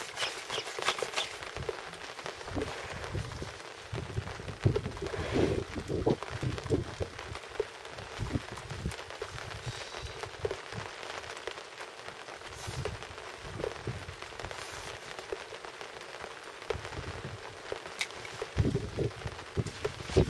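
Light rain pattering on a boat, a steady hiss with fine scattered ticks, under irregular low thumps.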